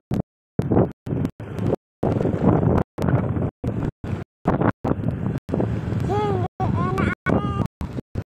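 Car moving slowly, with road noise and wind buffeting the microphone; the sound keeps cutting out to silence for short moments, about twice a second. A voice is heard briefly near the end.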